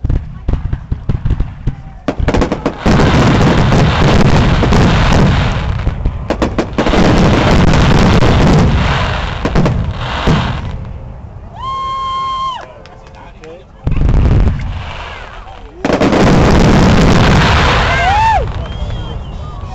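Aerial fireworks exploding: loud, rapid bangs and crackling in dense volleys, easing off for a couple of seconds past the middle, then a single sharp burst and another heavy volley near the end.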